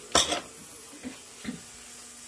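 A small stainless spring clip dropped into a metal wire-mesh parts basket: one short metallic clink just after the start, then a couple of faint light taps.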